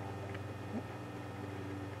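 Faint steady hum and room tone in a pause between spoken words, with one brief faint sound under a second in.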